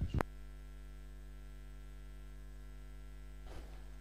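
Steady electrical mains hum, a low buzz with many evenly spaced overtones, with one short knock just after the start.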